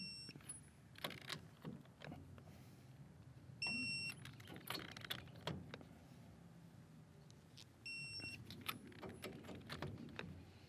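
A torque wrench on a truck's lug nuts gives three short electronic beeps, about four seconds apart, each one signalling that a nut has reached the set torque. Between the beeps the wrench's ratchet and socket make brief clicks.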